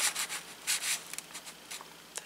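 Paper rubbing and sliding against paper under the hands: a few short, soft swishes as a printed paper piece is moved into place on a journal page.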